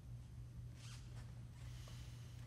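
Quiet stage room tone with a steady low hum and a few soft rustles about a second in, just before the strings begin.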